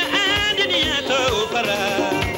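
Live African pop band: several high voices sing long, wavering notes together over electric guitar and drums, with a bass drum beat about twice a second.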